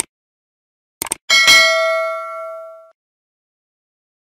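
Subscribe-button sound effect: a mouse click, then quick clicks about a second in, followed by a bell ding with several ringing tones that fades over about a second and a half and then stops.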